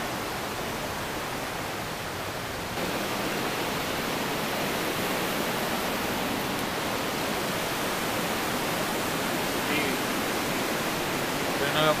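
Steady rush of a mountain river, a constant even noise that grows a little louder about three seconds in.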